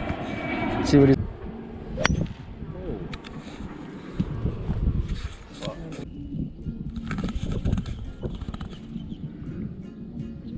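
A person's voice in the first second, then faint voices over outdoor background, with one sharp click about two seconds in.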